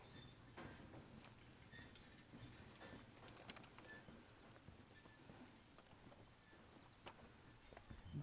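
Near silence: faint outdoor ambience with a few light, scattered ticks and a thin, steady, high faint tone.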